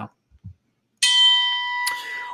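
A bell-like chime strikes suddenly about a second in. It is a single clear ding that keeps ringing steadily, with a short click near the end.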